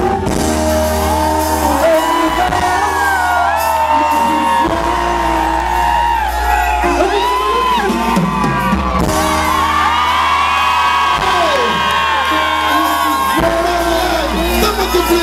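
Live pop music played loud over a stage sound system: a woman singing into a microphone with gliding vocal runs over a steady bass line.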